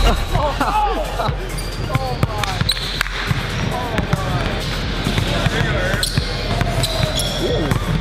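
A basketball bouncing on a hardwood gym floor in a few irregular dribbles, under people laughing and talking.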